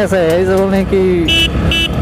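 Two short, high-pitched horn beeps about a second and a half in, over the steady running of the Hero Splendor Plus XTEC's small single-cylinder engine and road noise during the ride.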